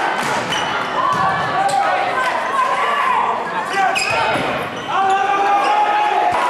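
Volleyball rally in a gym: several sharp smacks of the ball being served and played, over a crowd of spectators shouting and cheering.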